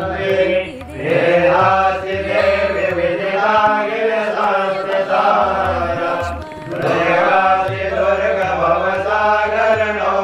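Priests chanting Sanskrit mantras in a steady, sing-song ritual recitation, phrase after phrase, with short breath breaks about a second in and again past six seconds.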